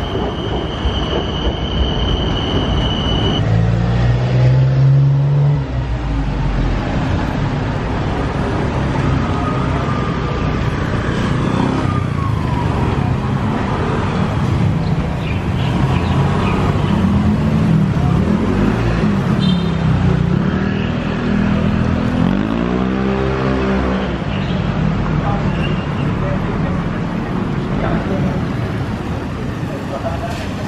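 Busy street traffic: cars and motorbikes running and passing close by. A steady high whine sounds for the first three seconds, and about two-thirds of the way in one engine revs up and falls away as it goes past.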